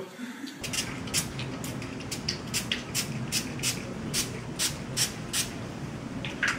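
Small pump spray bottle of Liquid Ass fart spray being squirted in a quick series of short spritzes, over a low room hum.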